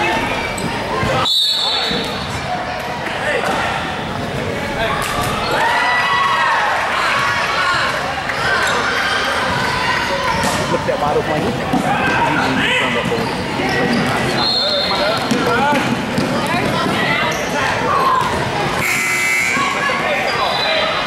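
Basketball game sounds in a large gym: a ball bouncing on the hardwood floor amid players' and spectators' voices. There are short high shrill tones about a second in, again around fourteen seconds in, and near the end.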